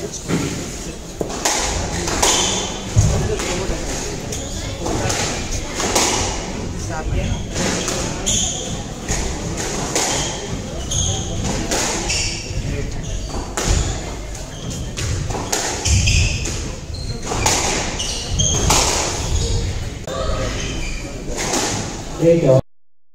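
Squash rally: the ball is struck by racquets and knocks against the walls and glass of a court, echoing in the hall, with repeated sharp hits every second or two. Shoes give short high squeaks on the wooden court floor.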